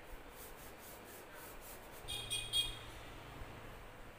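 A crayon rubbed back and forth on paper, colouring in a large area with quick scratchy strokes, about four or five a second. About halfway through, a brief higher-pitched tone with a low hum beneath it cuts in and is the loudest moment.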